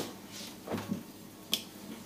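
Denim jeans being handled and smoothed flat on a table: soft fabric rustling, with one short sharp click about one and a half seconds in.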